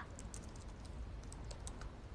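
Light, quick typing on a laptop keyboard: faint, irregular key clicks.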